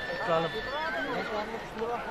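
Several horses neighing among a large herd, with men's voices and some hoofbeats mixed in.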